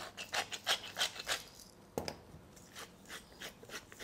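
Hand-held grinder mill being twisted to grind salt and pepper over a raw beef steak: a quick run of grinding clicks for about the first second and a half, then a few more scattered turns.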